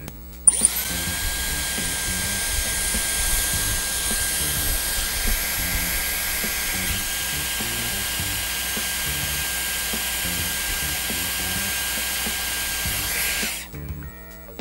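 Dyson Airwrap styler running with a curling barrel, hair wound around it: a steady rush of air with a high, even motor whine. It switches on about half a second in and cuts off just before the end.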